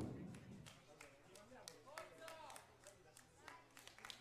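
Near silence: the commentator's last words fade out in echo at the start, then only faint scattered claps and faint distant voices.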